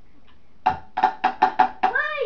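A pitched musical instrument struck six times in quick succession, all on about the same note, beginning about two-thirds of a second in.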